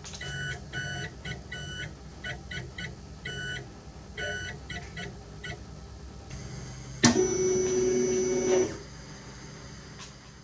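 Morse code beeps keyed in dots and dashes, sending a general call "QST DE" followed by the ham radio callsign KB9RLW. About seven seconds in comes one louder, longer steady tone lasting under two seconds, starting with a click.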